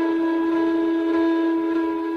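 Indian flute holding one long, steady note.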